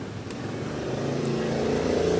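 A motor vehicle's engine running and getting steadily louder as it comes closer, its steady hum building from about a second in.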